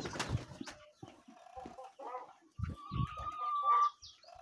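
Domestic chickens clucking, with one long, steady call near the end.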